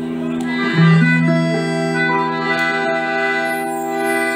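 Live band playing the instrumental introduction to a Turkish folk song (türkü): long held chords from a sustained-tone instrument, with a strong low note coming in about a second in.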